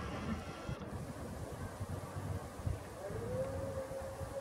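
Uneven low rumble of wind buffeting the camera microphone. About three seconds in, a faint thin tone rises and then holds steady.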